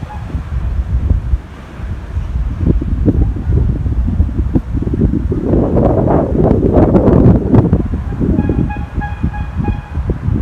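Wind buffeting the microphone on an open chairlift: a loud, uneven low rumble that gusts stronger in the middle. Near the end a steady horn note sounds for about a second and a half.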